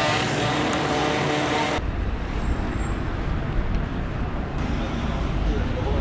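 Busy city street: road traffic with people's voices for the first couple of seconds. About two seconds in, the sound changes abruptly to a steady low rumble of traffic.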